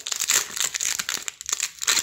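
Foil sticker packet from Wow Stickers being torn open and crinkled by hand: a dense, irregular crackling of thin metallic film.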